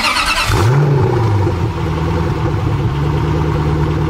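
Vehicle engine starting: a burst of cranking noise, then the engine catches under a second in, rises and falls in pitch once and settles into a steady idle.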